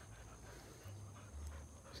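Faint panting of dogs, over a low rumble.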